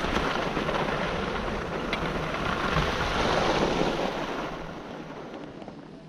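Gliding over groomed snow: a steady rushing scrape mixed with wind on the microphone. It swells a few seconds in, then fades near the end as the glide slows to a stop.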